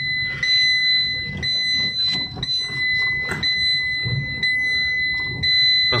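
A car's electronic warning chime sounding a steady high beep, broken by a brief gap about once a second, over the low hum of the moving car.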